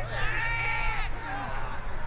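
A single long, high-pitched shout held for about a second near the start, over a steady low rumble.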